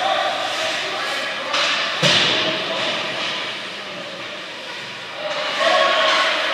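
Ice hockey rink sounds: a sharp bang about two seconds in, with skates scraping on the ice and spectators calling out at the start and again near the end.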